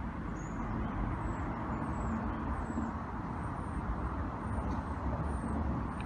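Steady low rumble of outdoor background noise, typical of distant road traffic, with a few faint high chirps over it.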